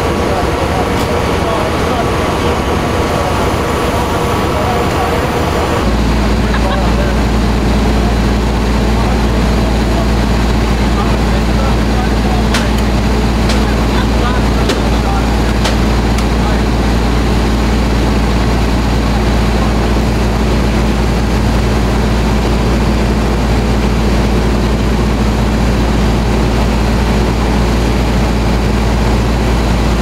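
A large truck's diesel engine idling steadily, a constant deep hum that comes in at a cut about six seconds in, with a few faint clicks near the middle. Before it there is a noisy outdoor hum with faint steady tones.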